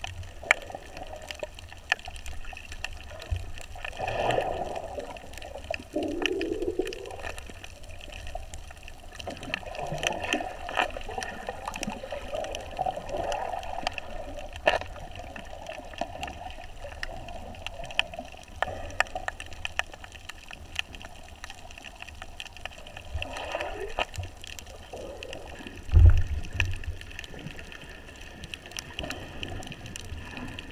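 Underwater sound picked up by a cased action camera: muffled water movement and gurgling, with many sharp clicks and crackles all through. One loud low thump comes near the end.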